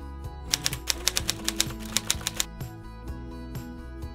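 Soft background music with a quick run of typewriter-like key clicks laid over it: about a dozen sharp clacks, starting about half a second in and stopping about two and a half seconds in.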